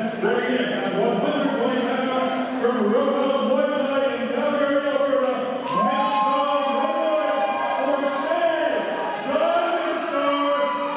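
A solo voice singing slow, long-held notes through a microphone and PA, echoing in a large gym hall.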